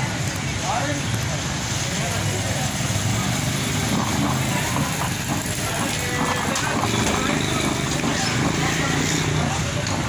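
Busy street ambience at a steady level: traffic running past with a low rumble, and background voices chattering.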